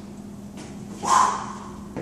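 A man's short strained grunt of effort, about a second in, as he finishes holding a resistance-band lunge.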